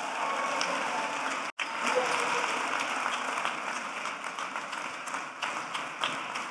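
Audience applauding steadily, thinning slightly toward the end, with a momentary break in the sound about a second and a half in.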